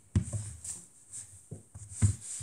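Plastic chess pieces being set down on a board by hand: a soft knock just after the start and another about a second and a half in, with light handling rustle between.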